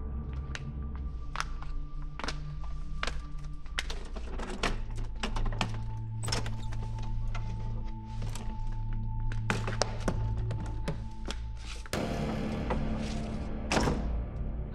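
Dramatic suspense score with low held notes and a higher held note above them, broken by many sharp, irregular knocks.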